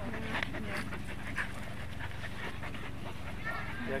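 A husky on a leash panting close by, in short breathy bursts.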